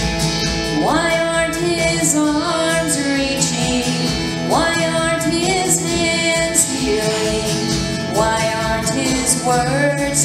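A woman singing a solo into a handheld microphone over instrumental accompaniment, her voice sliding up into long held notes at about a second in, at about four and a half seconds, and again near eight and a half seconds.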